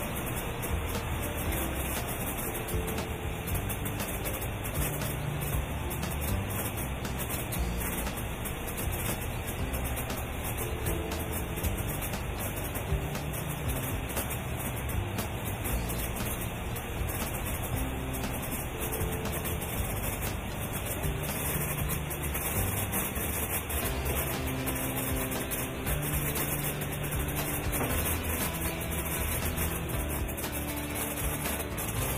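Background music with held notes over a steady noise.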